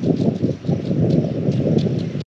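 Wind buffeting the microphone: an uneven, gusting rumble.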